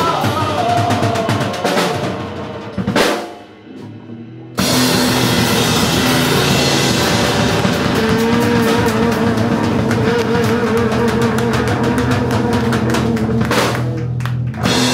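Live electric blues trio of electric guitar, bass and drum kit playing. About three seconds in the band stops on a drum hit and drops out for about a second and a half, then comes back in all together, with a wavering, bending guitar line over the groove. The band drops out again briefly near the end.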